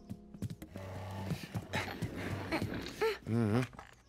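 Quiet background music under a few sharp knocks and a scuffling, shuffling noise as a small figure climbs onto a wooden chair, with a short low vocal sound about three seconds in.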